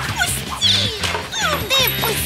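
Short, high-pitched yelps and strained cries from cartoon characters struggling in a scuffle, over the show's background music.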